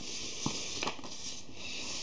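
Thin card being folded and creased by hand along a fold line: soft rubbing of paper, with two light crackles about half a second and just under a second in.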